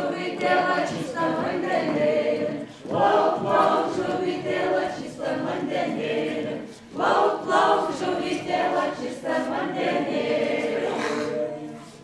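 A group of men and women singing a Lithuanian round-dance song (ratelis) unaccompanied, in sung phrases of about four seconds with brief breaks between them. The singing fades out at the end.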